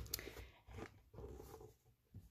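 Faint rustling and light handling noises of hands pressing on the closed plastic lid of a FoodSaver vacuum sealer, in a few short scattered bursts.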